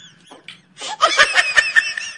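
Laughter: a few faint snickers, then from about a second in a loud, high-pitched burst of laughing.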